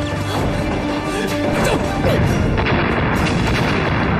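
Dramatic background music with explosions booming through it, getting louder about halfway through.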